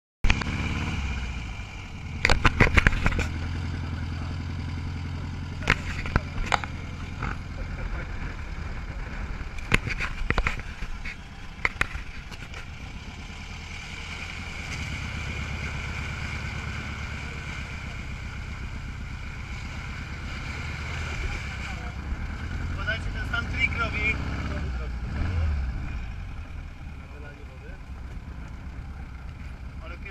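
A dune buggy driving on a beach: its engine runs steadily under wind noise on the outside-mounted camera, with sharp knocks from bumps several times in the first dozen seconds. Midway, water rushes and splashes around the front wheel as the buggy drives through shallow surf.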